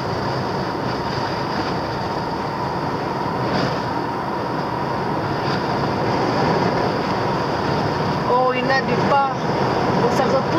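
Steady road and engine noise inside the cabin of a moving car, with a thin steady whine running through it.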